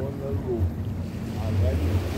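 Small waves washing up onto a sandy beach, a steady wash of surf, with wind rumbling on the microphone.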